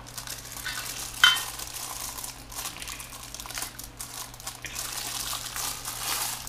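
Clear plastic parts bag crinkling and rustling as the desk hardware is handled, with one sharp click about a second in.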